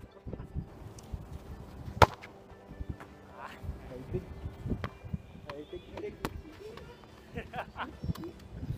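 Faint voices in the open air, with one sharp knock about two seconds in, the loudest sound, and a few weaker knocks after it.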